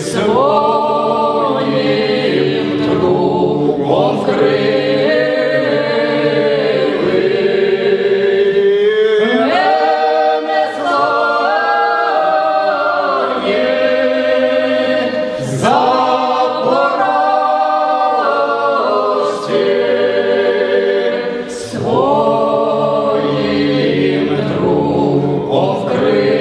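Choir singing a Ukrainian Cossack folk song in long held phrases, broken by a few brief pauses.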